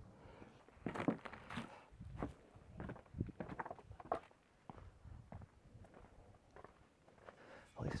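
A series of quiet, uneven footsteps, thinning out after about five seconds.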